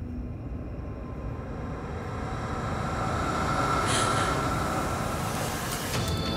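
A low rumbling drone on the drama's soundtrack, swelling up through the first four seconds with a steady high tone held over it.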